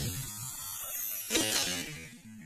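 Radio-controlled car's motor buzzing as the car flies off a jump, with a louder clattering burst about a second and a half in as it comes down and tumbles.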